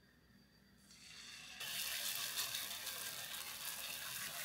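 Potato pancake batter frying in an oiled nonstick pan, a steady sizzle that starts faintly about a second in and grows louder a moment later as the batter spreads in the hot oil.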